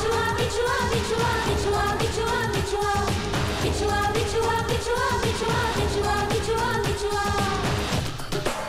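Bollywood film song: singing over a dense dance beat, with a short melodic figure repeating about once a second.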